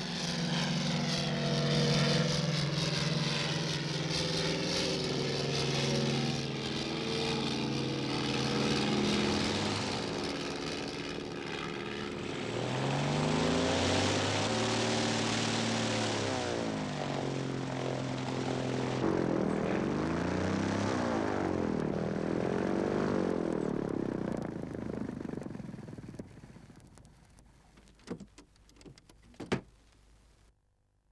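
Single-engine propeller crop-duster running as it moves along the ground, its engine note rising and falling a few times. The sound fades near the end, followed by a few sharp clicks.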